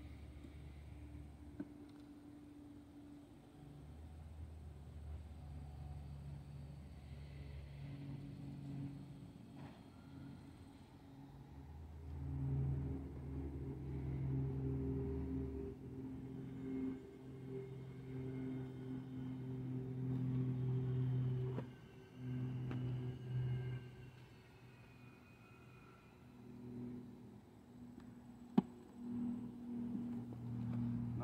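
Honeybees buzzing around an open hive: a low hum that swells and fades in stretches of a few seconds as bees fly close, with one sharp knock near the end.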